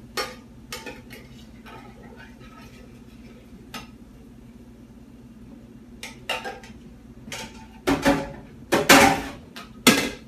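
A utensil scraping and tapping inside a tin can as condensed tomato soup is scraped out into a glass coffee carafe, in scattered short clicks and scrapes. Louder clatters come near the end.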